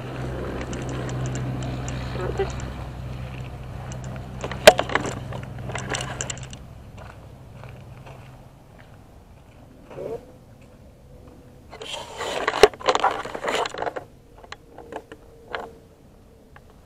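Handling noise from a handheld camera: scrapes, rubs and clicks of hands and clothing against the body near the microphone, over a steady low rumble in the first half. One sharp knock comes about five seconds in, and a dense burst of scraping and clicking comes near the end.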